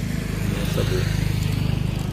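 A road vehicle's engine running as it goes by on the street, a low steady hum that grows louder and then holds.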